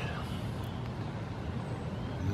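Steady background noise of distant road traffic, with no distinct events.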